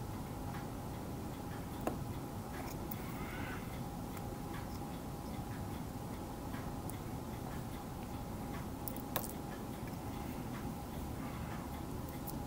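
Irregular, sharp little clicks of a hobby blade cutting through the tabs of a photo-etched brass fret to free tiny parts. The two sharpest clicks come about two seconds in and about nine seconds in, over a steady faint hum.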